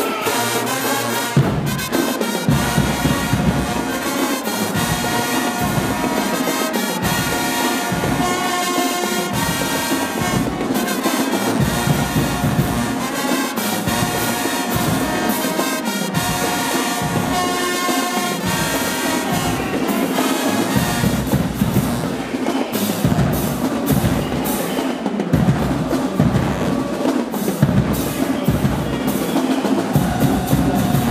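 High school marching band playing: a brass section of sousaphones, trumpets and trombones over drums. A steady, regular bass-drum beat comes in about a second and a half in.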